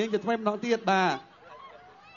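A man's loud voice calling out in short bursts over a PA system, the last call drawn out with a rising-then-falling pitch, stopping about a second in; then it goes quiet.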